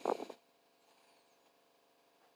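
Near silence after the last word of a spoken phrase trails off.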